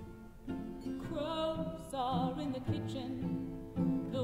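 A woman singing an old-time folk song with a strong vibrato, her voice coming in about a second in, over strummed acoustic guitar and cello.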